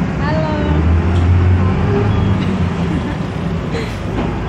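Steady low rumble of a city bus's engine and running gear, heard from inside the passenger cabin, growing louder between about one and two seconds in.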